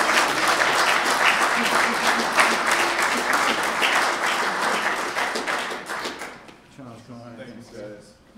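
Audience applauding, a dense patter of clapping that dies away about six seconds in; a few voices follow near the end.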